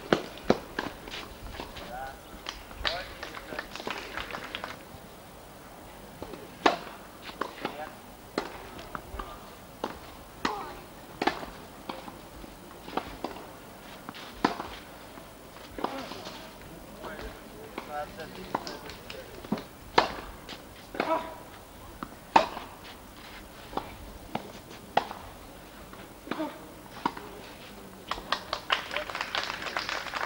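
Tennis balls struck by rackets and bouncing during rallies: sharp knocks at irregular intervals, some in quick pairs. Faint voices can be heard in between.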